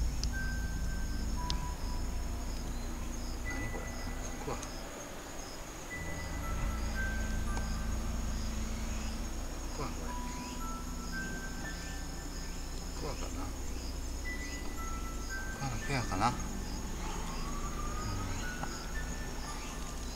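Night insects trilling: a continuous high trill with a fainter pulsed chirp repeating about every half second. Low rumble and light rustling from the handheld microphone run underneath.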